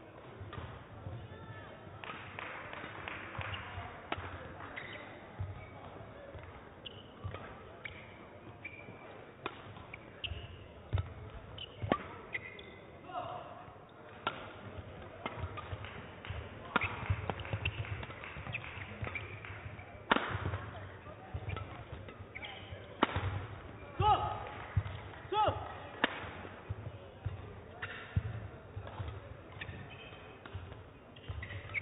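Badminton rally in a large hall: sharp cracks of rackets striking the shuttlecock, one every two to three seconds from about twelve seconds in, with shoes squeaking on the court floor and footfalls between the shots.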